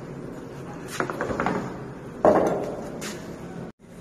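Knocks and clatter over a steady background hum: a sharp knock about a second in followed by a short rattle, then a louder bang a little over two seconds in that dies away. The sound drops out for a moment near the end.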